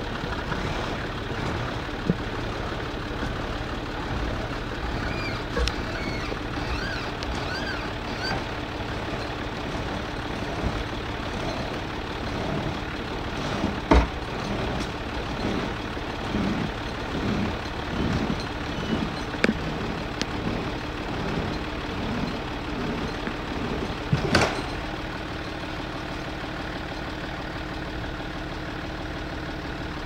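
Toyota Land Cruiser HJ60's diesel engine running steadily while it drives its PTO winch. A sharp knock comes about halfway through and another about ten seconds later, with irregular low knocking in between.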